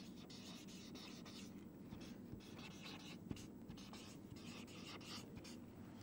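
Marker pen writing on chart paper: faint, irregular strokes of the felt tip that stop shortly before the end.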